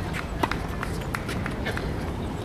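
Tennis point in play on a hard court: a sharp ball strike off a racket about half a second in, among quick scuffs and steps of tennis shoes on the court surface, over a low steady rumble.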